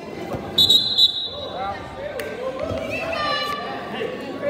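Spectators' voices shouting during a high school wrestling bout, with a brief high-pitched squeal about half a second in and a sharp click a little past two seconds.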